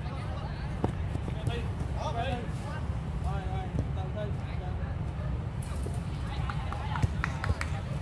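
Live sound of a five-a-side football game on artificial turf: players' scattered distant shouts and calls, with a few sharp knocks of the ball being kicked, over a steady low rumble.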